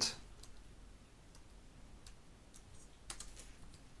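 Faint typing on a computer keyboard: a few scattered keystrokes, then a quick run of several keys about three seconds in.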